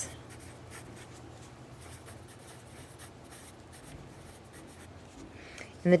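Pen writing words on a paper worksheet: a run of faint, short pen strokes over a low steady background hum.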